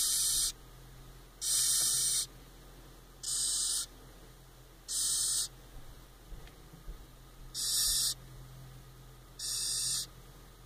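Flat-horned hissing cockroach giving six short, loud hisses, each about half a second long and spaced every one and a half to two seconds. These are defensive hisses, each one set off by a finger prodding it.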